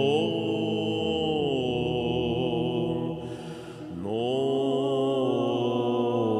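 Byzantine chant: a voice sings a slow, melismatic line of long, gliding notes over a steady held drone (ison). The singing drops away briefly about three seconds in, for a breath, and resumes about a second later.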